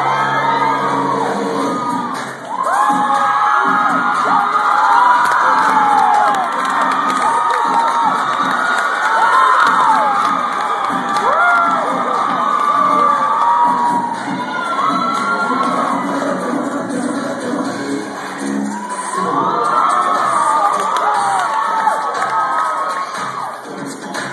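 A largely female audience screaming and cheering loudly without a break, full of high shrieks that rise and fall; the noise dips briefly about two seconds in and then swells again.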